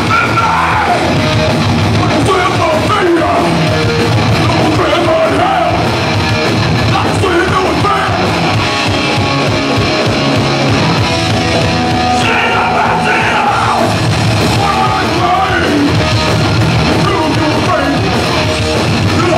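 Live hardcore punk band playing loud electric guitars, bass and drums, with a voice yelling the vocals over them.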